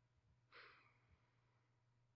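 Near silence with a low steady hum, broken about half a second in by one faint, short exhale like a sigh.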